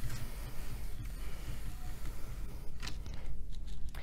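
Seat belt webbing being drawn slowly out of a switchable retractor toward full extension, the step that switches it into automatic locking mode: a faint sliding noise over a low room hum, with a brief click about three seconds in.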